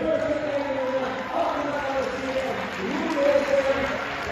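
A voice singing long, slowly wavering notes.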